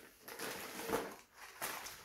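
Faint handling noise: a few soft rustles and light knocks as small cardboard candy boxes are picked up and held.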